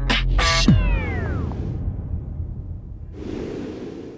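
Cartoon soundtrack: a short pitched cry about half a second in, then a sound effect sweeping down in pitch over a low rumbling music bed, and a whooshing swell near the end.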